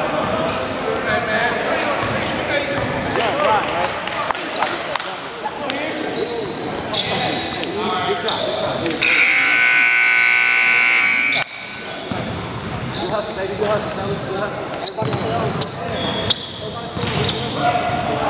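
Gymnasium scoreboard buzzer sounding one steady, loud blast of about two and a half seconds, about nine seconds in, then cutting off suddenly; it marks the game clock at zero. Around it, voices chatter and basketballs bounce on the hardwood, echoing in the hall.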